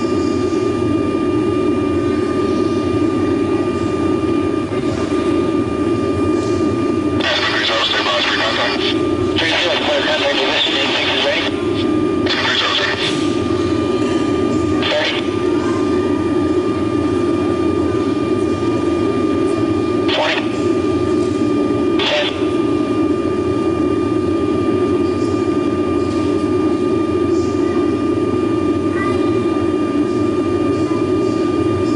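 Cabin noise from the boom operator's station of an aerial-refuelling tanker in flight: a steady drone with a constant thin whine, played back from an old video recording through loudspeakers. It is broken by several short bursts of intercom radio hiss, most of them between about 7 and 15 seconds in, with two more at about 20 and 22 seconds.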